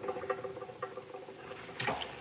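A small object drops into a weed-covered pond and splashes, a short sudden burst near the end. Before it there is faint, scattered light ticking over a low steady hum.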